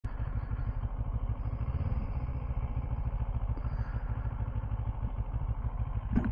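CFMOTO 650 MT motorcycle's parallel-twin engine idling steadily, its low, even pulsing holding at one speed with no revving.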